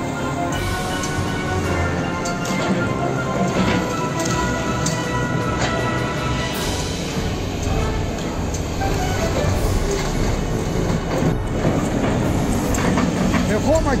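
Background music, with a singing voice coming in near the end.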